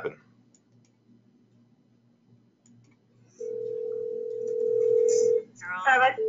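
Telephone ringing tone on the caller's line: one steady ring of about two seconds, starting a little past halfway, as an outgoing call rings at the other end. Before it, near silence with a faint hum.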